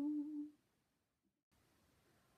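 A woman's sung last note, held with vibrato, fading out about half a second in, then near silence.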